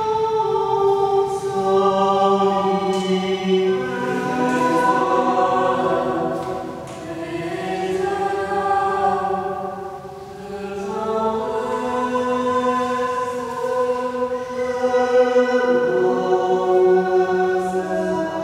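A group of voices singing together in slow, sustained harmony, the chords shifting every few seconds, with brief dips between phrases about seven and ten seconds in.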